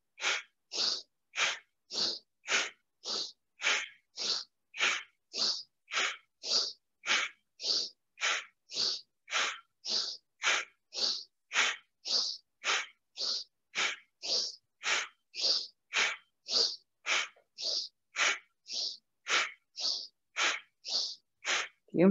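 A woman's rapid, forceful breaths in a steady rhythm of about two a second, each a short sharp puff of air: breath of fire (kapalabhati) pranayama, building heat before a breath hold.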